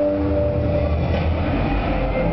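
A deep low rumble from the live show's sound system, while the held tones of the musical score fade out within the first second.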